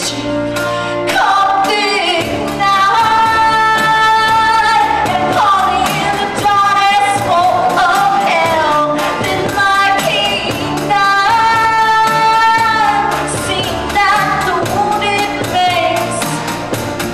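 Live rock-musical number: singers holding long, bending notes into microphones over a band's accompaniment.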